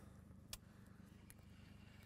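Near silence: a faint low background rumble, with a small click about half a second in.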